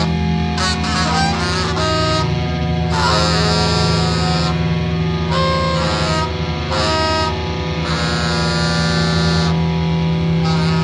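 Live experimental rock band playing loud, dense sustained notes that change pitch every second or so over a steady low drone, with no break in the sound.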